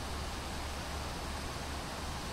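Cooling fans of a Mechrevo Jiguang Pro gaming laptop running hard under a stress test: a steady airy whoosh with a low hum beneath it.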